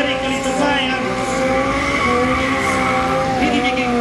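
Sport quad's engine held at high revs, a steady, slightly wavering drone, with its tyres skidding on the asphalt as it slides through a stunt.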